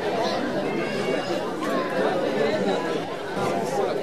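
Indistinct chatter of a crowd, many voices talking at once at a steady level.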